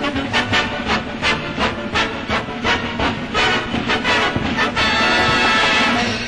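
1930s British dance band on an early film soundtrack playing the closing bars of a hot jazz number, with strongly accented beats about three a second. About five seconds in it ends on a long held final chord with a hand cymbal crash.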